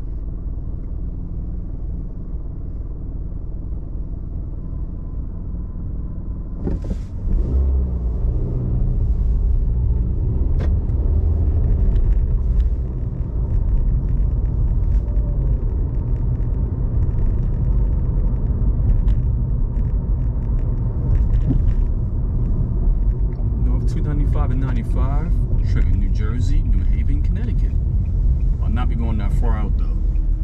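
Car engine and road noise heard from inside the cabin: a steady low idle rumble while stopped, then about seven seconds in it grows louder as the car pulls away and drives on.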